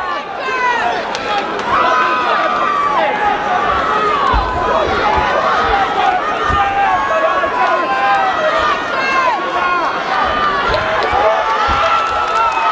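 Crowd of spectators shouting and cheering over one another, many voices at once, with a few low thuds about four and six seconds in.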